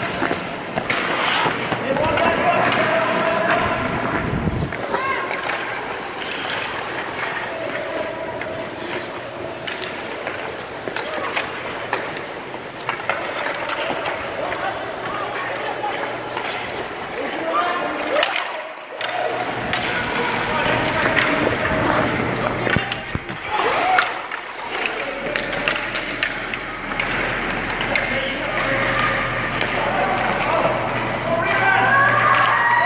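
Ice hockey play in an ice arena: skate blades scraping the ice and sticks and puck clacking, under children's high shouts and chatter, with a steady low hum.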